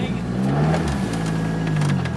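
Ford Sierra Cosworth's turbocharged four-cylinder engine running at low revs, heard from inside the cabin; its pitch rises slightly and settles back about a second in.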